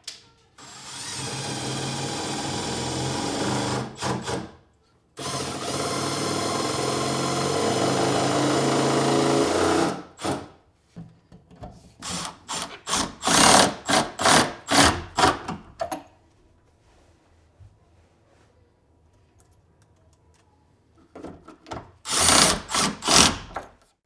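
Milwaukee cordless drill-driver driving long screws into cabinet and wall blocking: two long steady runs in the first ten seconds, the second slowly getting louder, then a string of short trigger bursts. After a pause of about five seconds come a few more short bursts near the end.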